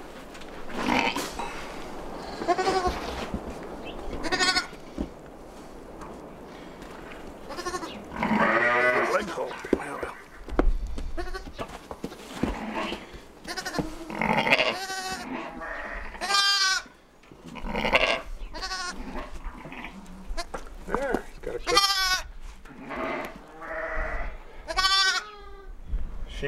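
Sheep bleating repeatedly: over a dozen high, quavering calls, one every second or two, from a lamb being handled and others in the pen.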